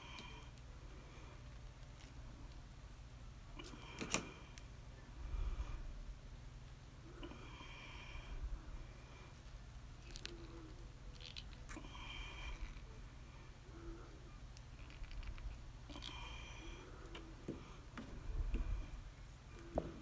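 Faint clicks and scrapes of thin bailing wire being wound by hand around a wooden dowel into a coil, with a couple of soft low bumps against the table.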